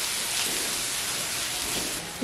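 Steady sizzling of food frying in hot oil in a pan.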